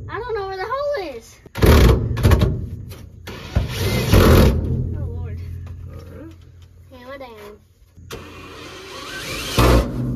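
Cordless drill running in three short bursts, driving in the bolts that hold a Hurst floor shifter to the truck's cab floor.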